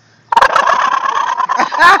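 A man's loud, drawn-out holler, starting suddenly and held on one steady pitch for over a second before breaking up near the end, much like a rooster's crow.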